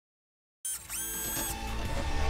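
Dead silence for just over half a second, then a TV show's intro sting cuts in suddenly: a synthesized tone that rises briefly and holds, over dense music and sound effects.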